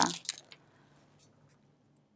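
Near silence, with a few faint clicks from a small plastic eyeshadow pot being turned in the fingers.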